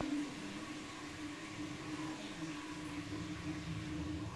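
A steady low machine-like hum, with a low rumble growing in the second half.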